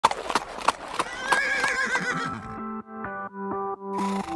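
A horse whinnying over a few sharp hoof clip-clops, followed about halfway through by an electronic music jingle with a steady run of notes.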